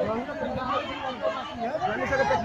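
Several people talking at once, overlapping voices in unintelligible chatter.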